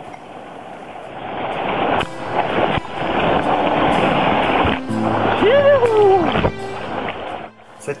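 Whitewater of a river rapid rushing and churning right at the camera at water level, swelling louder about a second and a half in. Near the end a person lets out one long whoop that rises and then falls.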